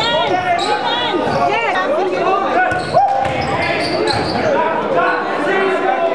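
Live basketball game sound in a gym: rubber-soled sneakers squeaking on the court in many short chirps, the ball bouncing, and voices calling out, all echoing in the large hall.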